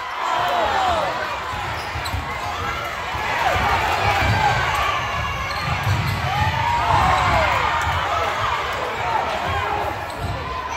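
Basketball game play on a hardwood gym floor: sneakers squeaking in short, repeated chirps as players cut and run, with a ball bouncing, over continuous crowd voices.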